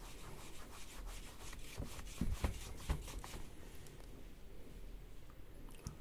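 Cloth rubbing over a smartphone's glass screen in faint wiping strokes, cleaning off dust before a glass screen protector goes on. A few light knocks from handling the phone come around the middle.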